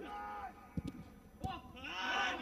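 A football being kicked, two dull thuds about two-thirds of a second apart, under a man's excited, drawn-out commentary that falls away in between and picks up again at the end.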